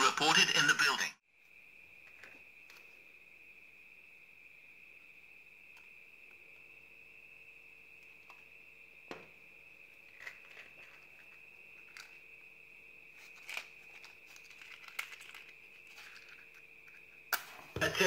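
A faint steady high-pitched electronic whine with scattered soft clicks and handling rustles, then, shortly before the end, a short sharp scrape as a match is struck and flares.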